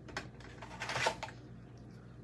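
Craft supplies being handled on a tabletop: a short click about a fifth of a second in, then a louder rustling, clattering handling noise around the one-second mark as a tool is picked up.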